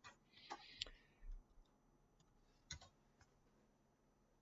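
Faint computer mouse clicks: a few sharp clicks in the first second and a close pair a little before the three-second mark, with a brief soft rustle in the first second.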